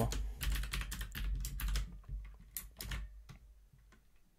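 Typing on a computer keyboard: a quick run of keystrokes for about two seconds, then a few scattered key presses that trail off.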